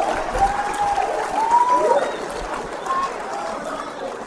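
Audience applauding and cheering, with a few whoops, dying down.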